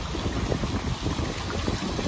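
Wind buffeting the microphone over the steady rush of a fountain's water.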